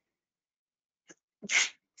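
A man sneezes once, a single short burst about one and a half seconds in, with a faint click just before it.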